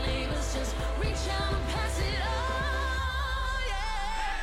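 Pop song with a steady bass beat; about halfway in, a singer holds a long, wavering note.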